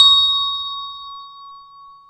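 A single bright bell-like chime struck once and left ringing with several tones, fading away over about two seconds: the sound-effect sting of an intro logo reveal.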